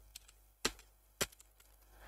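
Three faint, separate keystrokes on a computer keyboard, about half a second apart, as code is typed.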